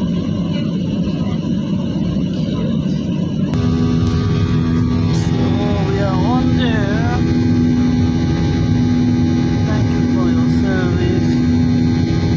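Airliner cabin noise: a low engine and rolling rumble while the jet is on the ground, then after an abrupt cut about three and a half seconds in, the steady drone of the jet engines climbing after takeoff, with a hum of steady tones under it.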